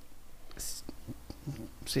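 A pause in a man's talk: a short, soft breathy hiss about half a second in and faint low mumbling, then he starts speaking again near the end.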